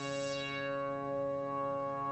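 Moog analog synthesizer holding one steady low note, rich in overtones. The brighter upper overtones fade away in the first half second as the filter cutoff is turned down, leaving a duller sustained tone.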